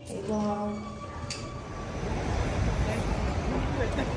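City street noise: a steady rumble of traffic that swells about a second and a half in, after a short vocal sound at the start.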